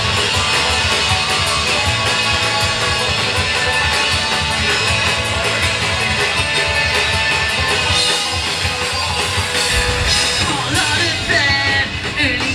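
A live rock band playing loudly, with electric guitars and a drum kit. A man's voice starts singing near the end.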